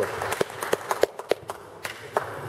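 Scattered hand clapping from a few people, irregular and thinning out as it fades.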